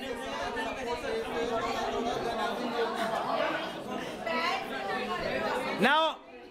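A group of people chattering, many voices talking over each other at once, with one voice rising loudly right at the end.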